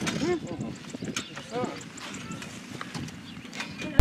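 Indistinct voices talking in short, rising-and-falling phrases, with a few light clicks.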